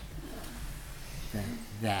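A man's low voice: a short hum-like sound a little past halfway, then the word "that" near the end, over a faint room hum.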